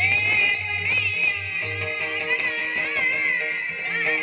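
Marathi Warkari devotional song (a gaulan) sung into a microphone, an ornamented, wavering melody over steady instrumental accompaniment.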